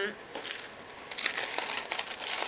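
Translucent packaging sleeve crinkling and rustling as it is opened by hand and sticker sheets are slid out, louder from about a second in.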